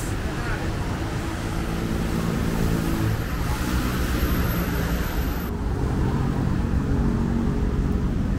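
Steady road traffic on a multi-lane highway heard from an overbridge: a continuous rush of passing cars with the hum of their engines drifting in pitch. The high tyre hiss eases about five and a half seconds in.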